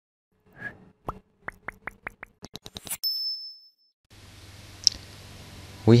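Intro sound effect: a soft swish, then a run of short plucked blips that come faster and faster, ending on a bright ringing ding that stops about four seconds in. Then a faint steady hiss with a single click just before speech begins.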